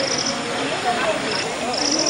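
Insect chirping in short, rapidly pulsed high trills, three bursts, over a murmur of distant voices.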